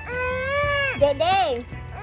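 A high-pitched voice holds one long, steady note for about a second, then gives a shorter rising-and-falling wail.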